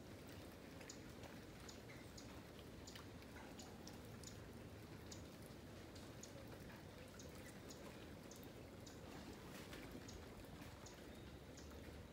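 Faint, steady background noise with scattered soft ticks of water dripping after heavy rain.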